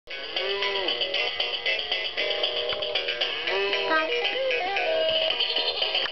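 Electronic toy guitar playing its built-in tune: a bright, jangly backing with a sung melody in a thin, electronic-sounding voice, set off by the buttons being pressed.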